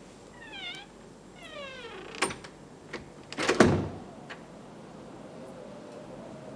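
Two high squeals that glide downward in pitch, the second longer, then a few sharp clicks and a loud thump about three and a half seconds in.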